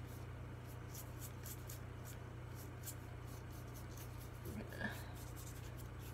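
Faint, repeated swishing of a large watercolor brush stroking across wet paper, several strokes a second, over a steady low hum.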